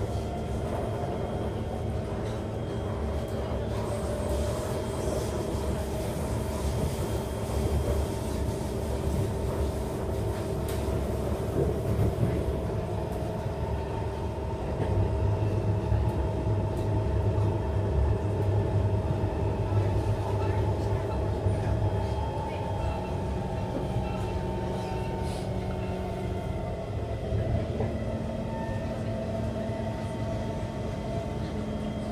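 Inside the carriage of a Singapore MRT East-West Line train running on an elevated track between stations: a continuous rumble of the wheels on the rails with a steady hum. It grows a little louder for several seconds around the middle.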